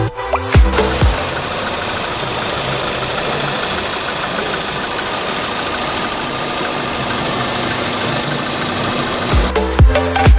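Volkswagen Vento's 1.6-litre four-cylinder petrol engine idling steadily, heard with the bonnet open. Electronic dance music cuts out just under a second in and comes back near the end.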